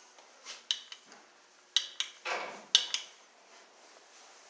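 Old metal elevator part being handled: about five sharp metallic clinks and knocks, with a short scraping rub a little past halfway.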